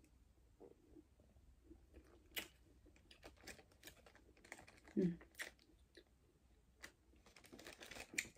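Faint chewing of an edible, with the crinkle and rustle of a plastic zip-top bag being handled and closed, heard as scattered small clicks and rustles. A short vocal sound comes about five seconds in.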